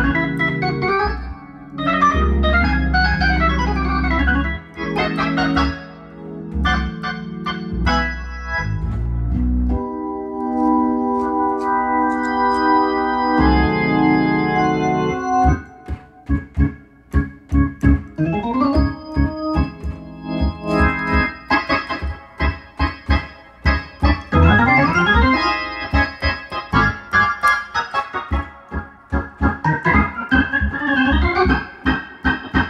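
1955 Hammond B-3 organ played through a Leslie 122 speaker. It opens with held chords over a low bass for about ten seconds and then a held chord without the bass. From about halfway it switches to short, choppy chords broken by quick rising runs.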